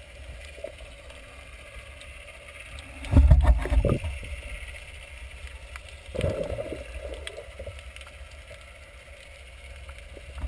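Muffled underwater sound picked up by a submerged GoPro in its waterproof housing: a steady low rumble of water, with two louder low thumps and swishes. The louder one comes about three seconds in and the other about six seconds in.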